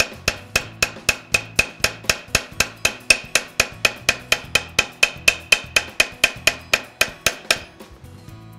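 Steel planishing hammer tapping a forged brass bar on a steel mushroom stake, in quick even blows about five a second with a light metallic ring, smoothing out the forging marks. The tapping stops just before the end.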